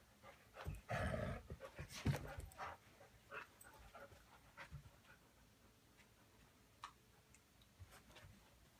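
Two dogs nosing at each other and moving about, making short breathy sounds; the loudest is a rush of noise about a second in, followed by a sharp click about a second later, then a few fainter short sounds.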